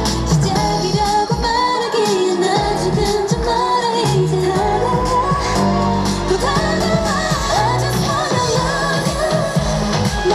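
K-pop dance-pop song played loud through a concert sound system, with a female lead vocal sung into a handheld microphone over a backing track with a steady bass beat.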